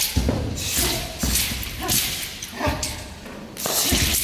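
Several thuds of a wushu athlete's feet and body hitting a carpeted floor during a broadsword routine, irregularly spaced, echoing in a large hall.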